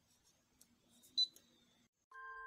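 A single short click with a brief high beep about a second in, over a faint low hum: a button pressed on a computerized embroidery machine's control panel.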